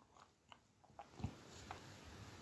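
Near silence with a few faint, soft taps as slices of raw onion are set down by hand in a ceramic baking dish.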